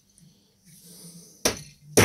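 Two sharp clicks, about a second and a half in and at the end, as a flat-blade screwdriver pries and knocks 18650 cells (Samsung 20R) out of the plastic cell holder of a Milwaukee M18 battery pack, with nickel strip still attached.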